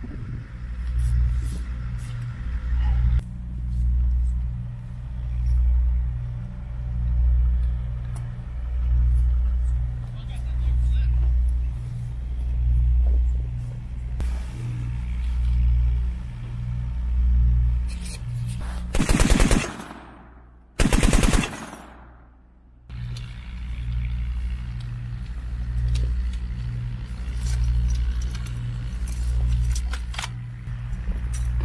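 Two short bursts of fire from an M2 .50-calibre heavy machine gun, each about a second of rapid shots, about two-thirds of the way through. A steady low throbbing that swells every couple of seconds runs underneath.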